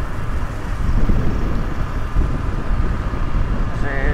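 Motor scooter riding along a city street: steady engine and road noise, with wind rumbling on the microphone.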